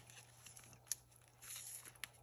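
Faint rustling of paper banknotes and a clear plastic cash envelope being handled, with one sharp click about a second in.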